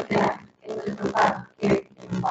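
A woman's voice speaking in short, broken phrases over a microphone, the words indistinct.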